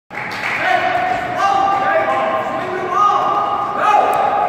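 Basketball shoes squeaking on a gym's hardwood court and a basketball bouncing, echoing through a large gym, with players' voices. The squeaks overlap into long high squeals that rise and fall.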